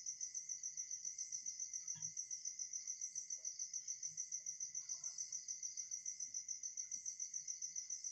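A cricket chirping steadily, a high trill pulsing rapidly and evenly, with a few faint scratches of a marker on a whiteboard.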